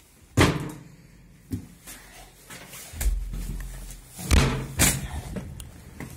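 A locked door being opened and pushed through: a sharp loud bang about half a second in, a smaller click, a low rumble, then two more loud bangs close together near the end.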